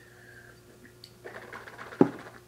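Faint sounds of a person drinking from a plastic cup over a low, steady hum, ending in a sharp knock as the cup is set down on the table.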